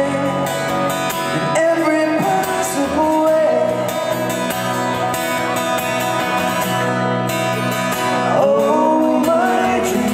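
Live band music: a man singing over a strummed acoustic guitar, the song going on without a break.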